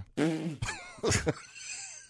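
A man laughing in a few short, breathy bursts that trail off toward the end.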